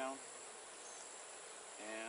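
Faint, steady insect drone: a constant high trill of insects, with the buzzing of honeybees from an opened hive.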